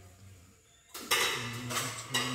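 Quiet for about the first second, then a brass puja bell ringing continuously with a dense, jangling metallic sound.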